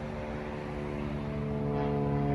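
Airplane flying overhead: a steady droning hum with a low note and its overtones, gradually getting louder.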